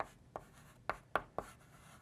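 Chalk writing on a blackboard: a quick run of sharp taps and short scratches as the chalk strikes and drags across the slate, about five strokes in the first second and a half.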